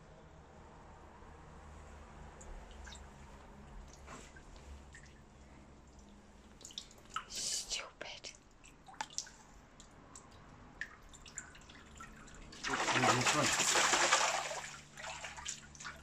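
Water dripping and lightly splashing as a landing net is worked through a concrete fish pond, then, about three seconds from the end, a loud rush of splashing water lasting about two seconds as the net is swept and lifted out of the water.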